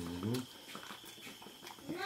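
A man's hummed "mm" of enjoyment while eating, dying away about half a second in. It is followed by a quiet stretch with faint small clicks of eating rice by hand.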